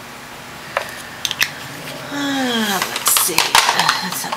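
A few light taps, then a short vocal hum that falls in pitch about two seconds in. Near the end comes a quick run of small clinks and taps as a paintbrush works in a water jar and among paint pots.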